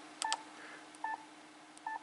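Yaesu FT-991A transceiver's key beeps: three short electronic beeps, about three-quarters of a second apart, as its touchscreen keys are pressed. A faint steady hum runs underneath.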